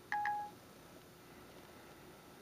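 Siri's short electronic chime from an iPod touch 4G, a brief higher note dropping to a lower one, about half a second long near the start: the tone that Siri has stopped listening and is processing the spoken request.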